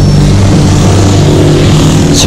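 Dramatic documentary background score: a sustained low drone with a rushing whoosh swelling over it as the on-screen title bar slides in.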